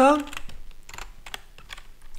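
Typing on a computer keyboard: a quick, irregular run of separate key clicks.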